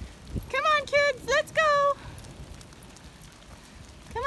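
A high, sing-song voice calls four short syllables within about a second and a half, not words the recogniser caught, over a steady hiss of rain.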